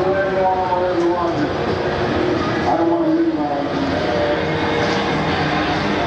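Loud festival din: amplified live rock music heard from a distance over a steady wash of noise, with a voice singing wavering, held notes in the first half and a long sustained note from about two thirds of the way in.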